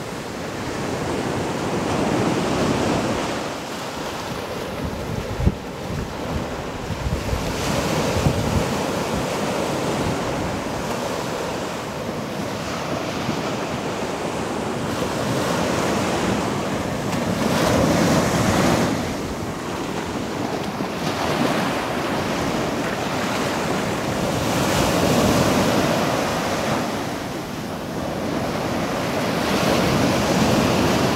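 Ocean surf breaking and washing up a sand beach, swelling and fading every several seconds as each wave comes in. Wind buffets the microphone, with low thumps a few seconds in.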